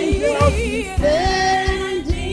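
Live gospel praise song: a lead singer with a wide vibrato over a band, sliding up into a long held note about a second in.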